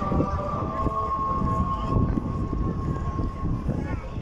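Adhan (Maghrib call to prayer) sung by the muezzin over the mosque's loudspeakers, holding one long note that fades out near the end, over a low background rumble.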